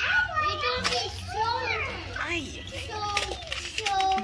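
Children's voices in play, vocalizing with pitch that swoops up and down but no clear words, with a few light clicks of plastic toy blocks being handled.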